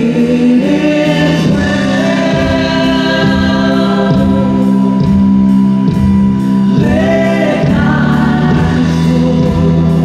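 A woman singing a slow Christian song into a microphone over acoustic guitar and band accompaniment. She holds long notes, and a new phrase begins about seven seconds in.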